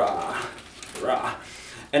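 A man's voice making short, drawn-out vocal sounds that the speech recogniser did not take down as words: one at the start and another about a second in, with quieter gaps between.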